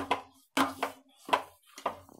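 Slotted steel spatula scraping and knocking against a kadhai while stirring lemon pulp and sugar, about five short strokes, roughly two a second.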